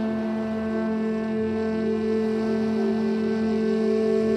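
Ambient meditation music holding a steady, unbroken drone of low sustained tones.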